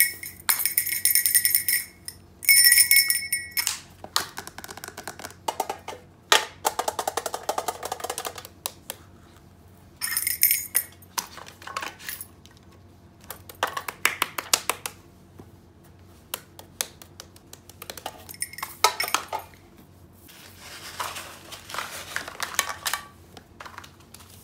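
Small objects being handled and set down on a table: scattered clicks, knocks and light clinks, with plastic rustling near the end.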